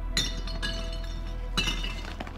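Wheelie bins being handled by refuse collectors: three sharp clinking knocks with a brief ring, the loudest near the end.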